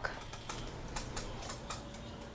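Faint, irregular clicks of typing on a computer keyboard over a low background hum.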